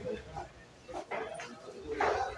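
Short bursts of people talking in a busy room, the loudest about a second in.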